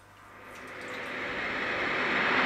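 A rising whoosh of hiss that builds steadily louder from near silence: an edited transition sound effect.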